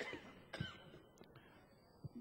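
A person clearing their throat, faintly: two short sounds about half a second apart, followed by a few faint clicks.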